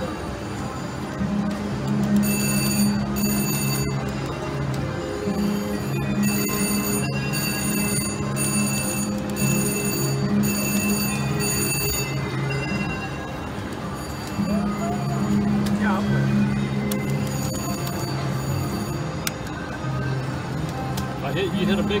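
Electronic spin sounds of a VGT High Roller Lightning Wilds reel slot machine through several spins: a low steady two-note tone that starts and stops with each spin. A high bell-like ringing chime pulses repeatedly from about two to twelve seconds in.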